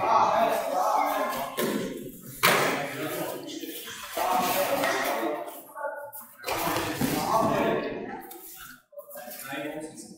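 People talking and calling out in a gym hall, with one sharp smack about two and a half seconds in.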